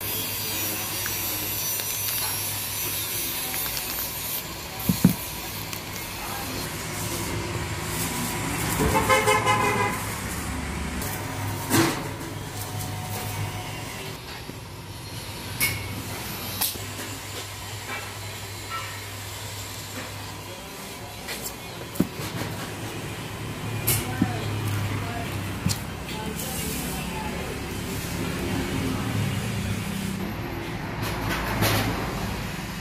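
Traffic running steadily, with a vehicle horn sounding once for about a second, some nine seconds in. There are a few sharp knocks and clicks from plastic-wrapped packaging being handled.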